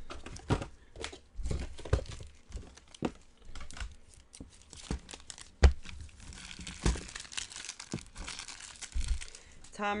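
Plastic packaging crinkling and tearing as trading cards are unwrapped and handled, with irregular sharp clicks and taps, the loudest a little past halfway.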